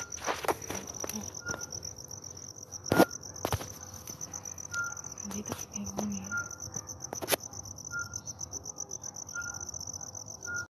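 Crickets chirping in a steady, fast-pulsing high trill, with a short lower note repeating about every second and a half. A few sharp clicks or knocks cut through, the loudest about three seconds in.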